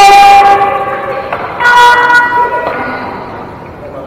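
Horn sounding twice in a gym: a long blast already going at the start that stops a little over a second in, then a shorter, higher-pitched blast about two seconds in.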